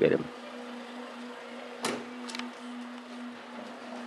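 A steady low hum, with a short sharp sound about two seconds in and a fainter one just after.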